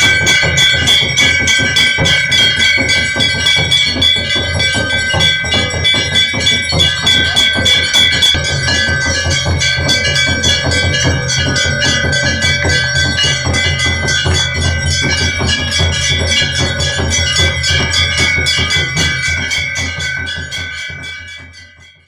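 Hindu temple bells rung continuously with rapid strikes, their ringing tones held steady over a low drumming, as in a temple aarti. The sound fades out near the end.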